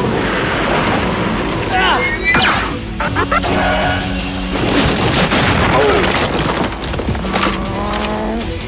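Cartoon action soundtrack: music under sound effects of booms and blasts, with quick squealing glides about two seconds in.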